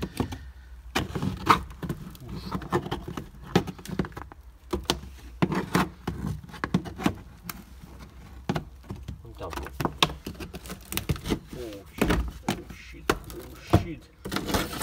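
A screwdriver scraping and poking at the rusted sheet-metal floor pan of a Honda Civic, with irregular clicks and knocks as the corroded metal is probed.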